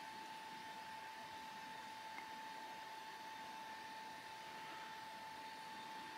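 Quiet room tone: a steady hiss with a faint, steady whine, and one faint tick about two seconds in.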